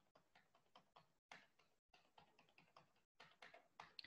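Near silence with faint, scattered clicks of a computer keyboard being typed on.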